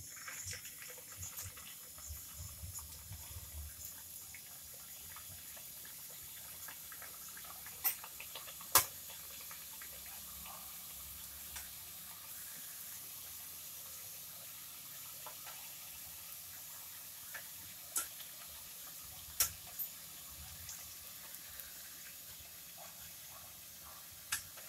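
Mathri dough pieces deep-frying in oil in a steel kadai on low heat: a soft, steady sizzle and bubbling. A few sharp clicks of a metal spatula against the pan stand out above it.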